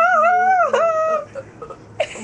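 A child's high-pitched squeal of laughter, held for just over a second with a wavering pitch that dips once midway, then trailing off into a few faint short sounds.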